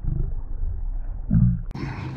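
Slowed-down, deep-pitched audio under a slow-motion replay of a fish strike: a low, drawn-out rumble with a short rising groan near the end. It cuts to normal-speed sound about three-quarters of the way through.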